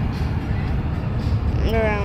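Steady low rumble of road and engine noise inside a car's cabin while driving on a highway, with a voice starting near the end.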